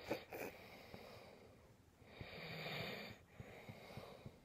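A dog breathing faintly close to the microphone: two short breaths right at the start and a longer, soft breath a little past the middle.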